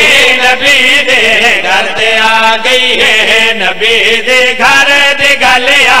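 Men singing a qasida in chorus: the lead reciter and his backing singers chanting a refrain with a wavering melody, loud and unbroken, over microphones.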